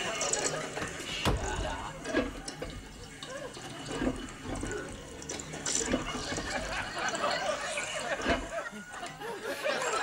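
An old high-level toilet cistern running on and won't stop, while its pull chain is jerked. There are a couple of heavy knocks, about a second in and near the end.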